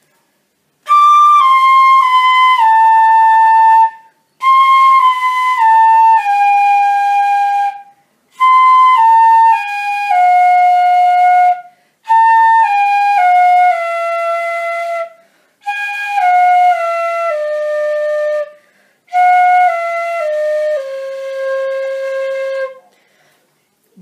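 Pífano (side-blown fife in C) played slowly: six runs of four notes stepping down in pitch, the last note of each held. Each run starts one step lower than the one before, with short breaks for breath between them. It is a long-tone and finger exercise for a clean tone.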